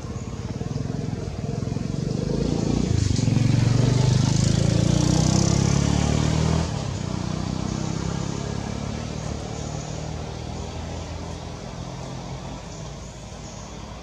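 A motor vehicle engine passing by: it grows louder over the first few seconds, drops sharply about six and a half seconds in, then fades away.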